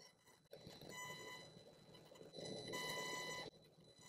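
Faint, steady, high-pitched buzz from a faulty microphone, heard in two stretches, from about a second in and again from shortly before three seconds, over a soft hiss.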